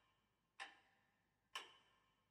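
Mechanical clock ticking faintly: two sharp ticks about a second apart, each with a brief ringing decay.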